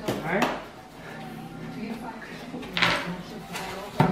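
Cardboard box being opened by hand, its flaps pulled apart and folded back with a scraping rustle just after the start and another, louder one about three seconds in.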